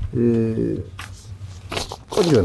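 Speech: a man's voice holding a short, level-pitched sound, then a brief pause.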